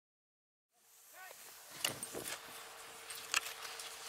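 Dead silence for under a second, then a steady outdoor hiss with a faint steady hum, broken by several sharp clicks.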